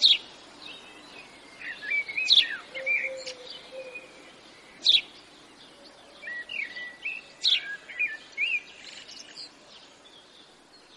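Birds chirping: a scatter of short, quick chirps and calls over a steady background hiss, with the loudest sharp notes at the very start and about two and a half, five and seven and a half seconds in.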